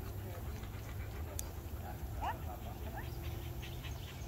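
A dog whining softly, with a few short rising whines about halfway through, over a steady low rumble.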